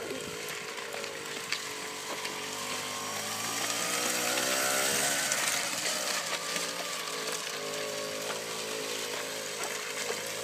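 Small supermoto motorcycle engine pulling away under load: its pitch climbs as it revs up to a peak about five seconds in, then eases off and holds steady.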